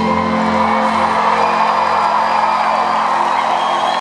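A live rock band's last chord rings out and is held as the concert crowd cheers and whoops at the end of the song.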